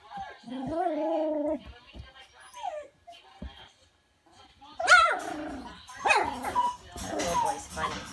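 A young puppy whining and whimpering in a series of short pitched cries, with a sharp high squeal about five seconds in.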